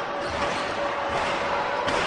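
Basketball arena ambience: a steady crowd murmur under a held musical note, with a basketball bouncing on the hardwood court near the end.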